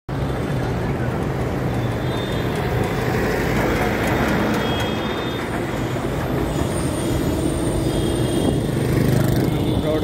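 Road traffic: vehicle engines running and tyres on the road, with a steady low engine hum and a car passing close about six seconds in.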